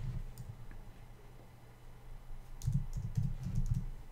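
Keystrokes on a computer keyboard: a few taps, then a quick run of typing near the end.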